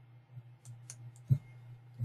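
A few light computer-keyboard clicks with a stronger one past the middle, as a number is typed into a field.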